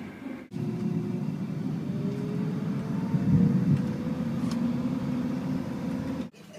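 Vehicle running with a steady low rumble and a motor tone that climbs slowly in pitch as it gathers speed. It starts suddenly about half a second in, after a short break.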